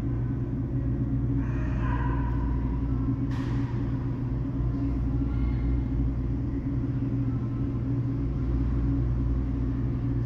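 Steady low machine hum, with a brief higher pitched sound about two seconds in and a short hiss a little after three seconds.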